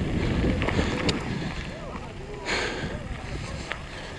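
Mountain bike tyres rolling and crunching over gravel, with wind buffeting the microphone, the noise easing off as the bike slows down. Voices of people nearby are heard through it.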